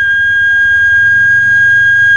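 Flute music: a single high note held steadily over a faint low drone.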